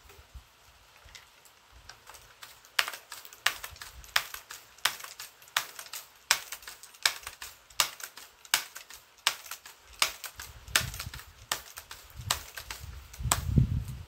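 A string of sharp mechanical clicks, about one every 0.7 s, from a scoped air rifle being handled, with low handling rumble toward the end.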